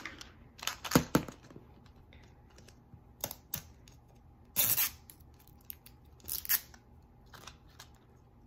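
Plastic wrapping on a Zuru Mini Brands capsule ball crinkling and tearing as it is handled and unwrapped, in short scattered bursts, the loudest about a second in and a longer tear near the middle.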